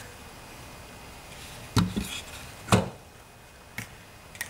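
An opened metal 5.25-inch floppy drive chassis being handled and set down on a tabletop: three short knocks around the middle, then a faint tick near the end.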